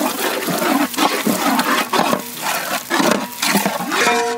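Long wooden paddle stirring a wet tomato-and-spice masala in a large metal cooking pot: repeated wet, churning scrapes, about two strokes a second.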